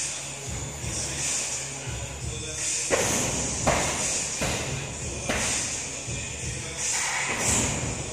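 Background music with a steady beat, and from about three seconds in a run of sharp thuds from karate kicks landing, roughly one every second, the first two the loudest.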